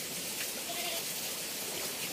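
Steady rush of running water, with a distant voice briefly heard just under a second in.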